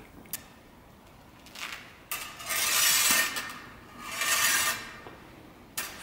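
Steel saber blades meeting and sliding along each other in a bind during a thrust: a light click, then scraping swells about a second long, and another click near the end.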